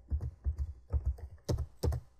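Computer keyboard keystrokes: a handful of separate key presses as a terminal command is typed, with the two loudest strokes near the end, the Enter key that opens the file in the vi editor.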